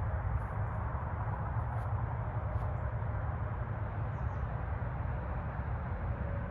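Steady low rumbling outdoor background noise with no clear single event, and a few faint soft ticks over it.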